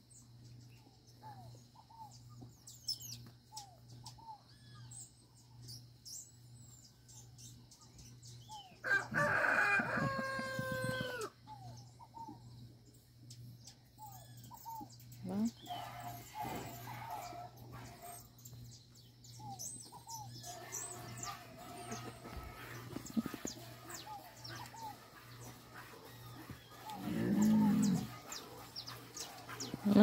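A rooster crowing once, about two seconds long, about nine seconds in; it is the loudest sound, over many small bird chirps and a steady low hum. A short low call comes near the end.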